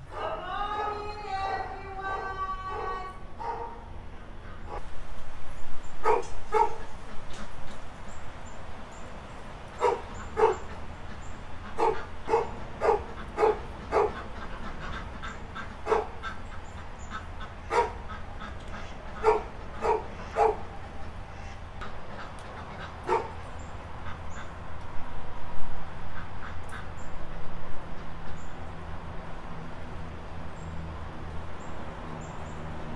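A dog barking in short single barks, one every second or so, after a drawn-out whining call at the start.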